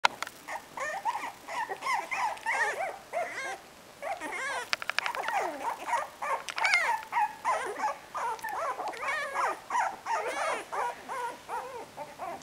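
Cocker spaniel puppies whining and yapping in a near-continuous run of high-pitched calls, with a short break about three and a half seconds in.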